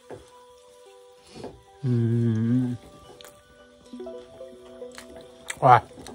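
Soft background music with held notes, over which a man eating gives a long hummed "mmm" of enjoyment about two seconds in and a brief voiced sound near the end, with faint wet mouth clicks of chewing.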